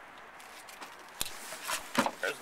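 Faint handling noise, with a sharp click a little over a second in and another click near the end as a hand takes hold of the Kia Soul's rear liftgate handle.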